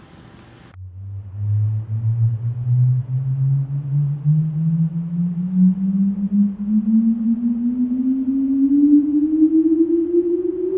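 A slow rising sine sweep played through a Genelec studio monitor. It starts about a second in as a low hum and glides steadily upward in pitch. This is the kind of test signal used to measure the room's acoustic response.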